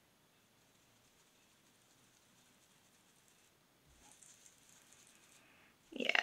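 Near silence, then from about four seconds in a faint soft scratchy rubbing: a foam ink dauber being swirled over paper to blend ink.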